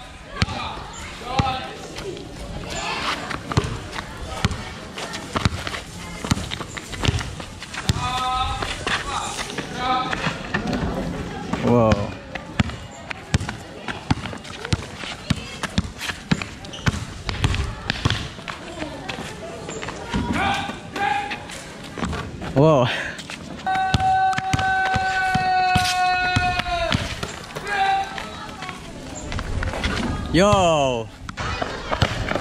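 Basketball dribbled on an outdoor paved court: a run of short, irregular bounces, with voices calling around it and one long held note near the end.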